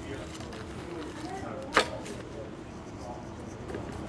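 Faint background chatter of other people's voices in a large kitchen, with one sharp click or tap a little under two seconds in.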